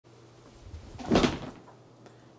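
A person dropping into an office chair: a soft shuffle, then a loud, short thump and rustle about a second in as the seat takes the weight.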